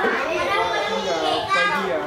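Young children playing and chattering, several high voices talking and calling over one another.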